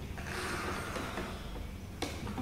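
Soft crinkling and rustling of a plastic water bottle being squeezed by hand to pump coloured water through tubes, lasting about a second, over a steady low hum.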